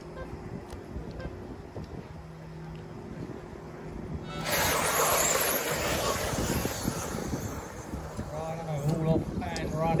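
A pack of vintage 4WD electric 1/10-scale off-road RC buggies launching at a race start: a sudden rush of motor whine and tyre noise about four seconds in that fades as the cars pull away.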